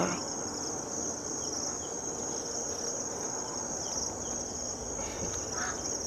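A steady, high-pitched chorus of insects chirring without a break, over a faint background hiss.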